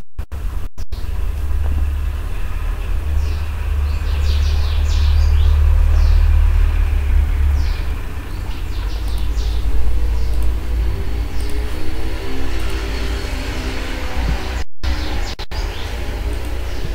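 Steady low rumble with birds chirping over it, the chirps thickest in the first half. Faint pitched tones come in near the end.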